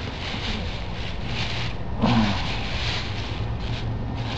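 A plastic bag rustling and crinkling in a few short bouts as it is worked open by hand, over a steady low hum.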